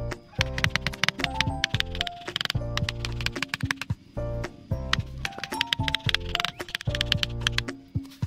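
Background music: a short melodic phrase with a low sustained bass note, repeating about every two seconds, with sharp percussive clicks through it.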